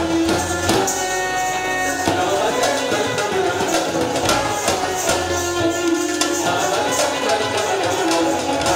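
Live Indian music: tabla playing a steady rhythm under sitar and other melodic instruments.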